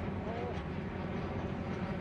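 Steady low outdoor background rumble, with a short faint wavering tone about a quarter of a second in.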